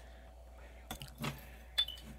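Metal measuring spoon clinking against a glass jar of dried herbs: a few light clicks about a second in, then one sharp clink with a brief high ring near the end.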